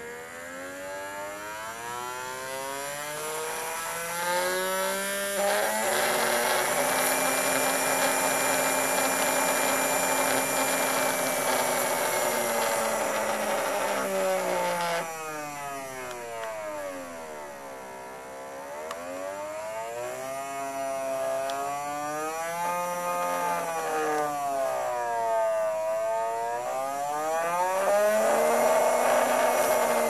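Small brushed DC can motor spinning unloaded under pulse-width-modulated drive, with a whine whose pitch follows its speed. The pitch rises as the duty cycle is turned up, holds steady, drops suddenly about halfway through, then swings down and up several times as the speed trimmer is turned, rising again near the end.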